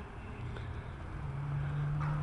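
A motor vehicle engine running, a steady low hum over low rumble, the hum coming in about halfway through.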